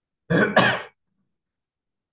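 A man clears his throat with a short, harsh cough: two quick pulses about half a second long in all.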